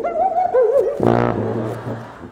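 Sousaphone playing a wavering, wobbly-pitched line that is not a clean sound, then settling about a second in onto a held low note.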